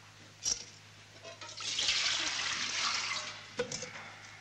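Water splashing in an enamel washbasin for about two seconds as a man washes his face and hands, with a sharp knock just before and another near the end.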